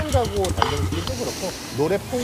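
Speech only: a man talking in Korean, with a faint hiss in the middle.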